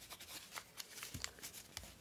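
Faint crinkling and rustling of scrunched brown parcel packaging paper being folded and handled, a scatter of small ticks.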